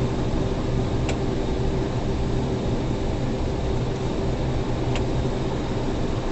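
Steady drone of a semi truck's diesel engine and tyres, heard from inside the cab while cruising on the highway. Two faint clicks, one about a second in and one near the end.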